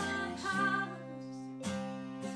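Acoustic guitar strummed in chords, with fresh strums at the start, about half a second in and again near the end, and a woman's voice singing over it.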